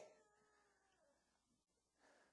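Near silence: faint room tone, with the last of a man's voice dying away right at the start.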